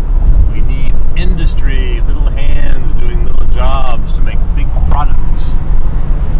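Car driving at highway speed, heard from inside the cabin: a loud, steady low rumble of road and engine noise, with voices talking over it at times.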